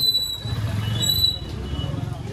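A motorcycle passing close by at low speed, its engine a low rumble. High, thin squealing tones come at the start and again about a second in.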